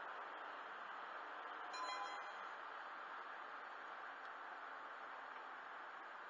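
Steady road and tyre noise heard inside a car driving on a freeway. A short chime of several tones sounds about two seconds in.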